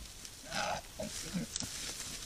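Wild boar grunting while rooting for food: one louder, rougher call about half a second in, then a few short, low grunts.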